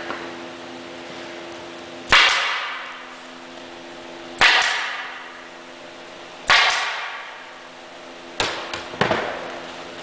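Staple gun firing staples through canvas into a wooden stretcher frame: three single sharp shots about two seconds apart, then a quick group of three near the end, each with a short fading tail.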